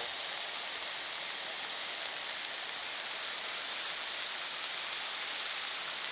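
Steady hiss of heavy rain mixed with the rush of a muddy floodwater torrent.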